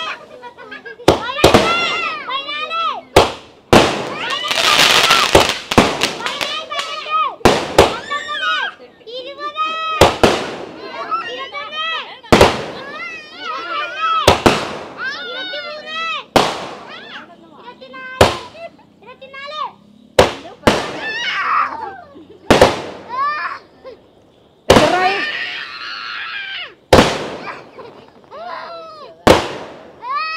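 A sixty-shot firework cake firing shell after shell, a sharp bang about every two seconds, with voices calling out between the shots.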